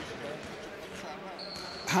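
Handballs bouncing on a sports-hall floor during training, with faint distant players' voices.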